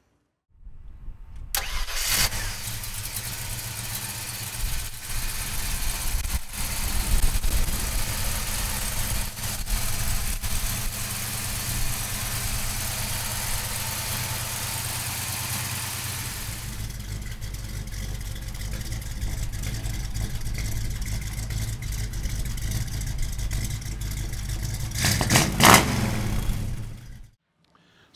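A Ford Racing 302 cubic-inch V8 crate engine in a 1966 Mustang starts, catching about two seconds in, then settles into a steady idle. Near the end there is a brief louder burst before the sound cuts off.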